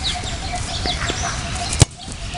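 A football kicked hard: one sharp thud of boot on ball near the end, over birds chirping in the background.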